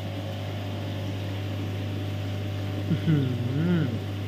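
Steady low electrical hum of aquarium pumps and filtration equipment running, with a man's short appreciative "uh-huh" about three seconds in.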